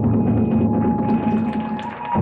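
Iwami kagura accompaniment music: a large barrel drum (ōdō) beaten in quick strokes under a steady held high note, dipping in loudness near the end.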